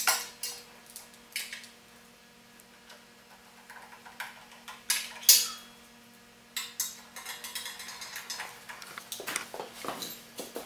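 Metal hand tools clinking and clanking on a small engine's fittings: a string of short, sharp knocks, the loudest about five seconds in and a quicker run of them near the end, over a faint steady hum.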